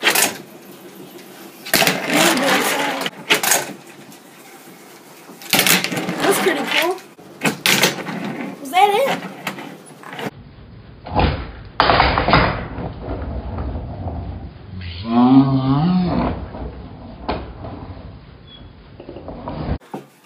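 A handboard being popped, flipped and landed on a wooden table: scattered sharp clacks and knocks of its deck and wheels hitting the wood, with rolling between them.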